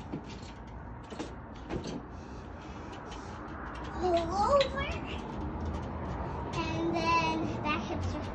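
A child's voice making a couple of indistinct drawn-out calls, the second held on a steady pitch, over steady outdoor background noise, with two short knocks in the first two seconds.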